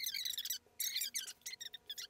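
Two people's conversation played back at high speed, their voices sped up into quiet, high-pitched chipmunk-like chatter of quick squeaky bursts.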